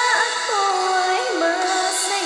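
A woman singing a slow Tagalog pop ballad over a backing track, holding long notes that step down in pitch.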